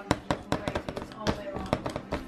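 A spoon tapping and scraping in a small plastic bowl of macaroni, a quick run of light clicks several times a second.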